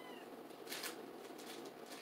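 A cat meowing faintly once at the very start, a short call that rises and falls in pitch, followed just under a second in by a brief soft rustle.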